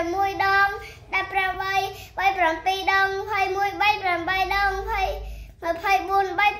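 A child's voice chanting short syllables in a sing-song on a nearly level pitch, in phrases of a second or so with short breaks between them.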